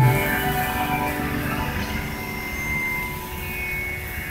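An Indian classical instrumental ensemble of sitar, bansuri, tabla and harmonium finishing a piece: a last stroke right at the start, then lingering notes fading away over a low hum of open-air background noise.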